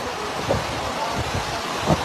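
Steady rushing noise of fast-flowing floodwater and heavy rain, with low gusts of wind on the microphone.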